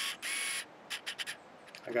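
A short whirr, then a few faint ticks in a quiet pause: a camera lens hunting for focus.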